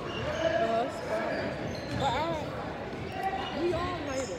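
Basketball bouncing on a hardwood gym floor during play, with voices in the gym.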